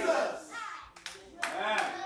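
Congregation voices trail off, then a few scattered hand claps come in about halfway through as the congregation begins to applaud, with some voices among them.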